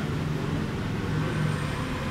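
Steady low background rumble with a low humming tone running through it.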